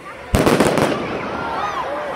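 A firework bursting overhead: a sudden loud bang about a third of a second in, with a short run of crackles after it, followed by scattered exclamations from the crowd.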